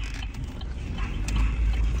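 Low, steady rumble inside a car cabin, with a few faint clicks and rustles.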